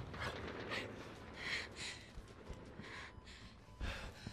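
A man breathing hard in about four short, breathy gasps.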